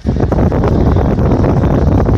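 Loud, steady crackling rumble of a yellow padded paper mailing envelope being handled right against the microphone.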